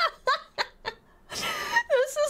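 A woman laughing in several short, quick bursts, with a longer laughing breath near the end.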